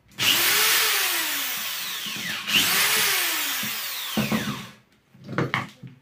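Power drill run twice, each run about two seconds, its motor pitch rising and then falling, with the bit working into the housing of a dismantled drill. A few short knocks and clicks follow near the end.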